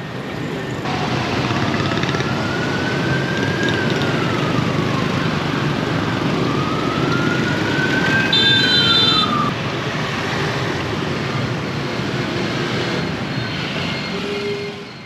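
Busy motorbike and car traffic noise, with a siren wailing twice, each time slowly rising and then falling in pitch. A brief high-pitched beep sounds during the second wail.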